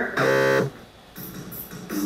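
Electronic game-show buzzer sound effect: one flat, low buzz about half a second long that cuts off suddenly, followed by quiet.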